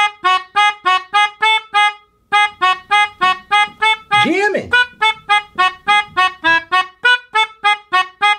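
Melodica played in short, detached notes, about four a second, picking out a simple repeating melody, with a short pause about two seconds in.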